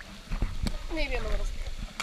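A person's voice gives a short wordless call that falls in pitch, about a second in, over low rumble and a few small knocks of water moving around the swimmer.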